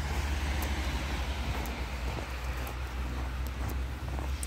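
Outdoor ambience: a steady low rumble of road traffic, with a few faint ticks.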